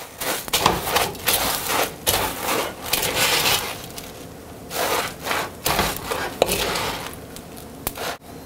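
A spoon stirring Rice Krispies cereal through sticky melted marshmallow in a stainless steel wok: irregular scraping and rustling strokes, easing off briefly in the middle and again near the end.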